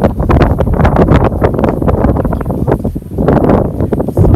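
Wind buffeting the microphone, loud and uneven, with a heavy low rumble.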